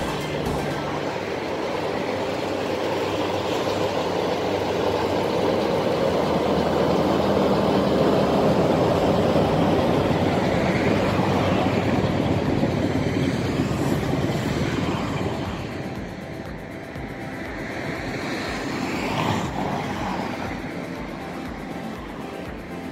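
Small diesel shunting locomotive running past during shunting moves: its engine grows louder as it nears and passes beneath, then fades away.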